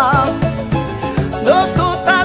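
A man singing a song to live band accompaniment with a steady, quick beat. A long held note with wide vibrato ends just after the start, and the voice comes back with a rising note about one and a half seconds in.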